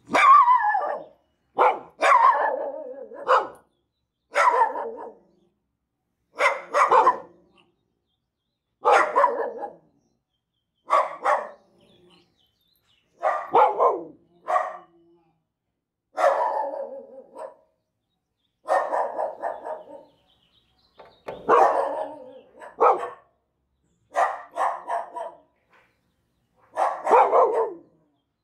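Small dogs barking angrily in short volleys of a few barks, about every two seconds, with silent gaps between: alarm barking set off by the mail carrier passing.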